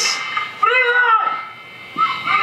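A person's short high-pitched cry, its pitch rising then falling, about half a second in and lasting about half a second.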